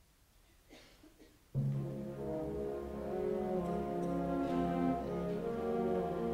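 A concert band starts to play, entering suddenly about one and a half seconds in with slow, held chords after a hush broken only by a couple of faint small noises.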